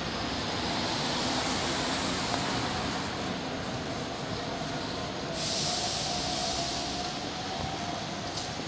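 Single-deck bus moving along a wet street: a steady noise of engine and tyres, with a thin whine that slowly rises in pitch. A louder hiss joins suddenly about five and a half seconds in.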